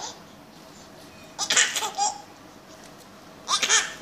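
A baby laughing in two bursts, the first about a second and a half in and the second near the end.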